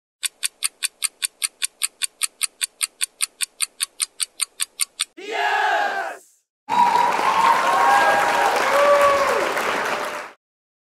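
Quiz countdown timer ticking fast, about five short high ticks a second, for the last five seconds of the countdown. The ticking is followed by a brief swooping reveal effect, then from about seven seconds in a few seconds of loud, dense sound with some melody in it.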